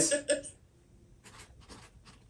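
A marker writing on the raw cloth back of a stretched canvas: a few faint, short scratchy strokes of handwriting.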